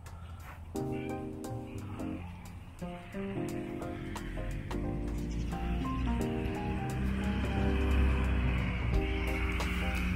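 Instrumental background music, a run of changing notes over a steady beat. A steady noise runs underneath and grows louder over the second half.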